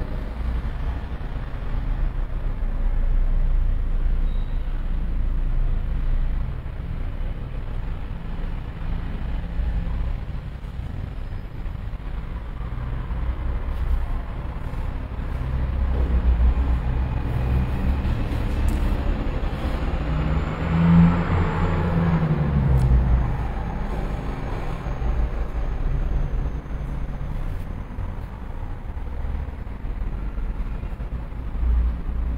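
Steady low rumble of road traffic, with one vehicle passing louder about two-thirds of the way in, its engine pitch rising and then falling.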